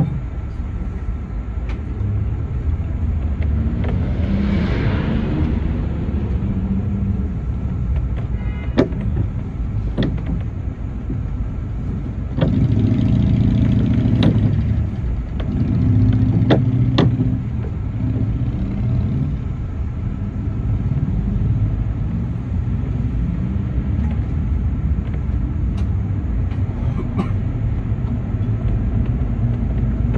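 City bus driving through town, heard from inside: a steady low engine and road rumble with sharp rattling knocks, a falling hiss a few seconds in, and the engine pulling harder for a couple of seconds about halfway through.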